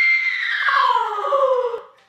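A person's single long, high-pitched scream that slides slowly down in pitch and fades out just before the end.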